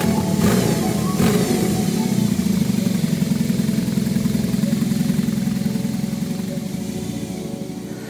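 BMW R18 custom's big boxer twin running through its bespoke exhaust, revved briefly twice about half a second and a second in. It then runs steadily as the bike rides off, fading toward the end.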